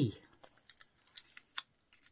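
Small folded slip of paper being unfolded by hand: a run of light paper crackles and clicks, the sharpest about one and a half seconds in.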